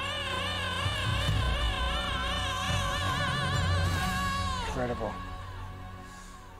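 Male singer holding a long high note with wide, even vibrato, called flawless. The note bends down and tails off about three-quarters of the way through, and a short lower phrase follows.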